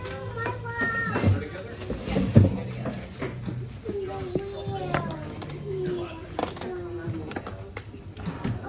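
Indistinct voices talking, with a steady low hum underneath and a single knock about two and a half seconds in.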